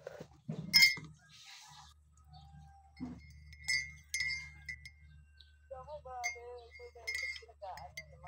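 Several light, high clinks, each leaving a ringing tone like a chime. The loudest comes about a second in and another rings on for about two seconds.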